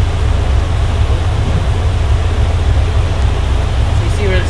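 Steady, loud rush of moving air over a deep, even rumble, with no engine note: large fans running.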